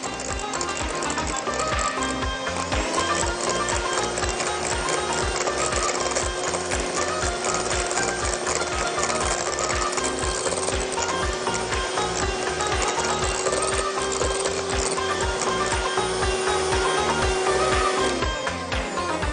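Electric hand mixer running steadily, its beaters whipping a cheesecake ice-cream mixture in a glass bowl. Its pitch steps up slightly about three seconds in. Background music with a steady beat plays under it.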